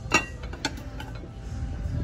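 Ceramic dinner plates clinking against each other as one is lifted off a stack: a sharp clink right at the start, a second about half a second later, then a few lighter ones.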